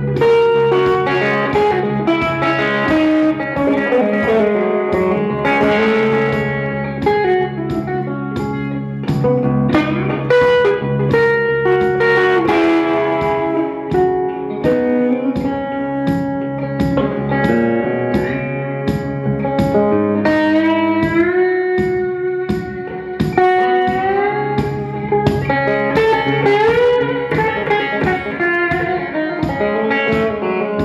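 Live blues-rock electric guitar solo with no vocals, many notes gliding up in pitch, over a steady beat.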